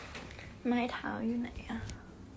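Speech only: a woman's voice says a short phrase starting a little over half a second in.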